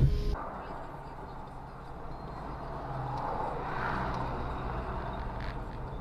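Steady noise of a vehicle driving, with a low engine hum under it, swelling slightly midway.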